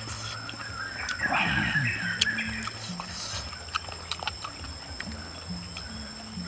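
Eating grilled snails over soft background music: a loud sucking sound about a second in as snail meat is pulled from the shell, and scattered small clicks of shell and pick.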